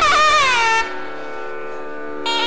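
Nadaswaram playing a held, reedy note that slides downward and breaks off under a second in, leaving a quieter steady drone sounding alone.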